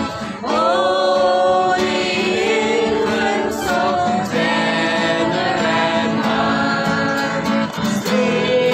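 A group of voices singing a Christmas carol together, accompanied by acoustic guitars.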